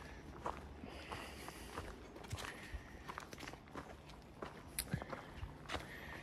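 Footsteps of a hiker walking on a forest trail: a faint, irregular scatter of light taps and crunches.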